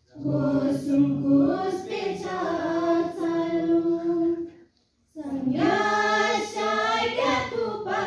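A group of school students singing together unaccompanied, in unison: one long phrase, a brief breath pause a little past halfway, then the next phrase.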